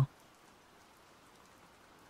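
Near silence with a faint, even hiss, just after a voice trails off at the very start.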